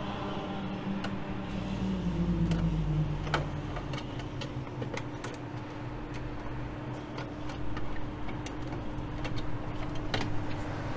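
Scattered small clicks of a screwdriver working the screws out of a variable-frequency drive's plastic cover, over a steady low machine hum. A low tone in the hum glides down in pitch about two seconds in.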